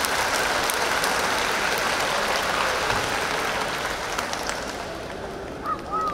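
Audience applauding, the clapping dying away over the last couple of seconds.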